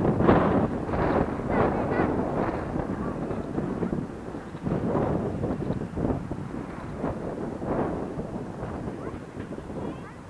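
Strong gusty wind buffeting the microphone: a rushing noise that comes in irregular surges. It is loudest at first and eases somewhat near the end.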